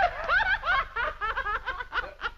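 Women laughing together, a run of quick repeated "ha"s.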